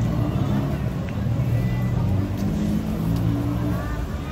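A motor engine running close by, a low drone that shifts in pitch a few times, with voices of passers-by underneath.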